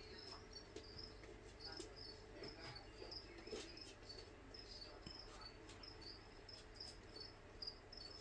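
A cricket chirping faintly, short chirps about twice a second, over a quiet room.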